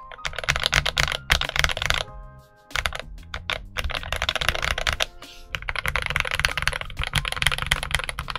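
Fast typing on an FL Esports CMK98 98% mechanical keyboard fitted with Kailh box switches in a tray-mounted steel plate: rapid runs of key clacks, broken by a pause of about half a second a little after two seconds in and another brief gap past the middle.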